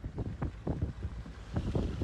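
Wind buffeting the phone's microphone in irregular gusts over a low, steady rumble, growing stronger near the end.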